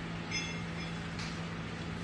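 A steady low hum with an even hiss, and a short high clink about a third of a second in.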